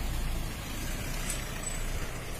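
A Toyota Innova Crysta MPV driving slowly past at close range, its engine running steadily with a low sound that eases about half a second in.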